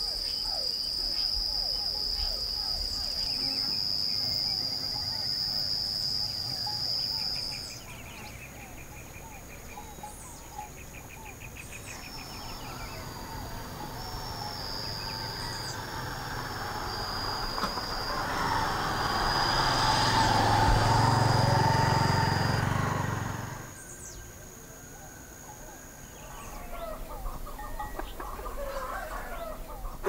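Rural outdoor ambience: a steady high-pitched insect drone for the first several seconds, with rapidly pulsing cricket chirps and high chirping calls. A louder rushing sound with a low rumble swells in the middle and cuts off suddenly.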